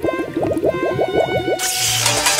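Cartoon bubbling sound effect, a quick run of short rising blips about eight a second, over background music. Near the end it gives way to a bright hissing swoosh.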